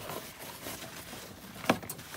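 Paper towel rubbing over a coiled steel phonograph mainspring, a soft rustling scrape, with one sharp click near the end.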